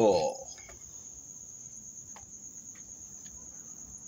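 Crickets chirping in a steady high trill, with a few faint clicks.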